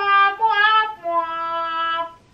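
A woman singing with no accompaniment, holding a few drawn-out notes that step down to a lower one held for about a second.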